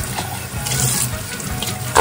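Kitchen faucet running steadily, its stream splashing over a glass tumbler as the suds are rinsed off it by hand.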